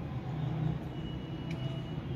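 Steady low rumble of background noise, with a faint click about one and a half seconds in.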